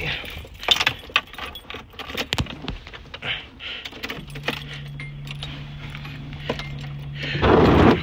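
Key ring jangling against the steering column as the ignition key of a Nissan 240SX S13 is handled and turned, with scattered light clicks. About halfway a steady low hum sets in, and near the end a loud burst as the engine cranks and starts.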